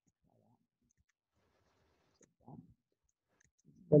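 Faint computer mouse clicks and small handling noises in a quiet room, with a man's voice starting to speak at the very end.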